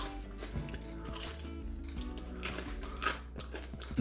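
A person chewing crunchy air-fried pastry money bags, with a few crisp crunches spread through the chewing, over quiet background music.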